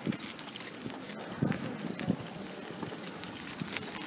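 Footsteps of a person walking on a paved street, picked up by a handheld phone microphone, with a couple of louder knocks about a second and a half and two seconds in.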